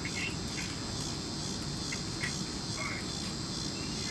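A steady, high, pulsing chorus of insects singing in the eclipse darkness.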